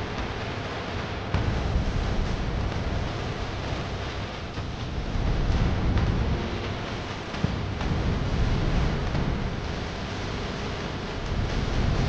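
Wind buffeting the camera microphone outdoors: an uneven low rumble that swells and eases, with a steady hiss over it.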